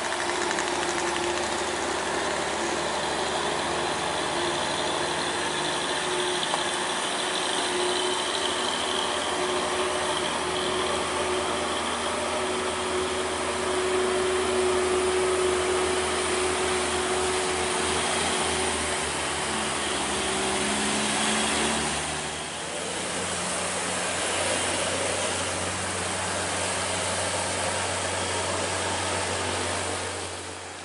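Heavy diesel truck engines running slowly and steadily on a climb, over a constant hiss of rain and tyres on a wet road. The engine note changes about two-thirds of the way through.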